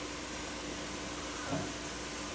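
Quiet indoor room tone: a steady hiss with a faint low hum, and one brief soft sound about one and a half seconds in.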